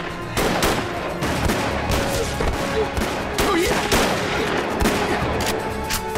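Volley of rifle gunfire from several shooters, shots overlapping irregularly, several a second, with dramatic score underneath.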